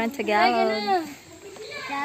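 Children's voices talking and calling out, drawn out and high-pitched, with a short lull about a second in.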